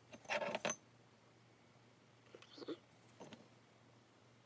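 A plastic squeeze glue bottle pulled out of a glass jar, clattering against the glass in one short burst, followed by two softer handling noises as the glue is applied to a paper and thread tag.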